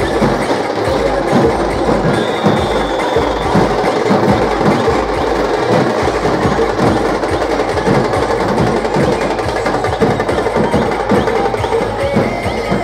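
Loud procession drumming: a band of drums and other percussion playing a fast, steady beat without a break.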